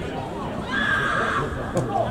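A person's long high-pitched shout, held for most of a second about halfway through, over low voices of players and spectators.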